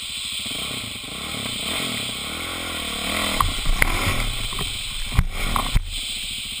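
Dirt bike engine revving up and easing back as the bike rides up a wooden pallet ramp and over a fallen log. In the second half come knocks and clatter as the bike bumps over the pallet and log, with the hardest thumps near the end.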